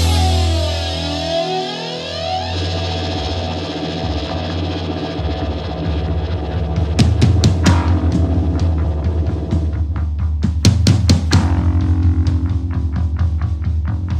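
Punk rock band playing an instrumental passage: electric guitar with a sweeping effect over a steady bass. Drums come in about seven seconds in and build up.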